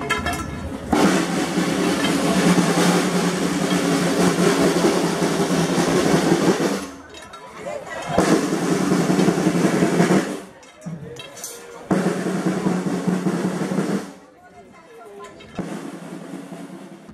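Procession band's snare drums playing drum rolls in three stretches, a long one of about six seconds and then two shorter ones of about two seconds each, with brief pauses between them.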